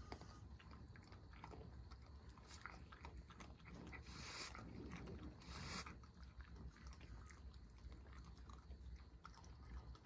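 Faint crunching and chewing of raccoons eating scattered food off a wooden deck, a steady run of small clicks. Two brief hissing noises come near the middle.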